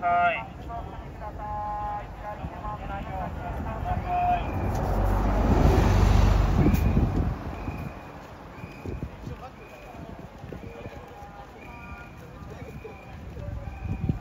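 A diesel city route bus passes close by. Its engine and tyre noise swell to a peak in the middle and fade as it pulls away. A short, high beep repeats about one and a half times a second through the second half.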